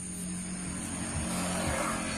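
A motor vehicle's engine giving a steady hum, with a rush of noise that builds toward the end.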